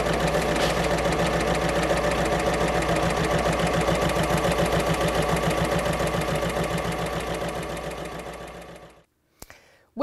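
Electric sewing machine running at speed, stitching with a rapid, even rhythm over a low motor hum. It fades out over the last few seconds.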